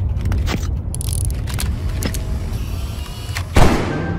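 Film-trailer sound design: a deep, steady rumble with scattered sharp clicks, and a short rising whoosh about three and a half seconds in that is the loudest moment.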